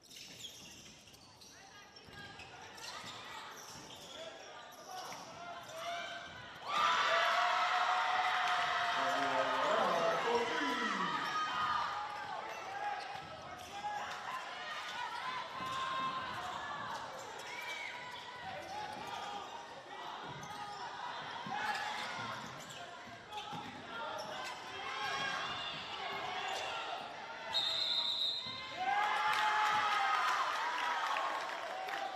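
Game sounds in a gym during a basketball game: a basketball bouncing on the hardwood floor, with players and spectators shouting. The voices jump suddenly louder about seven seconds in, and a short steady whistle sounds near the end.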